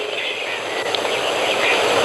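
A steady rushing noise at moderate level, with no clear tone or rhythm.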